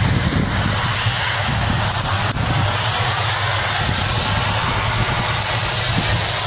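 Steady engine drone under a loud rushing noise, as inside a moving vehicle or aircraft, with a single sharp click a little over two seconds in.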